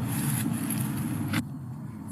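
Steady outdoor background noise, a low rumble with a hiss, that cuts off abruptly about one and a half seconds in at an edit, leaving a quieter background.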